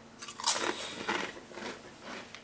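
Biting into a thick ridged potato chip: a loud crunch about half a second in, followed by several smaller crunches as it is chewed.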